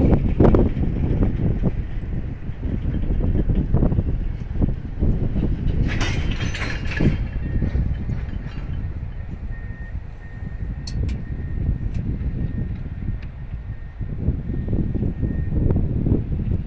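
CSX freight train of tank cars rolling past: a steady low rumble with the clicking and clanking of cars and wheels. A short burst of higher-pitched noise comes about six seconds in, and a faint thin steady squeal runs through the second half.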